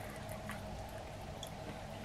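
Faint, wet sounds of chewing and tearing a cold sauced chicken wing by hand, with a few soft clicks over a low steady hum.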